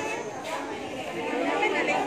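Background chatter: several people talking at once, none clearly.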